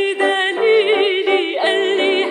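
Female singer performing an Arabic song with strong vibrato on held notes, accompanied by a grand piano.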